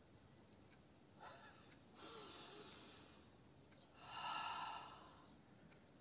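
A person breathing out audibly: a faint breath about a second in, then two strong exhales about two seconds apart, each starting sharply and fading away over about a second.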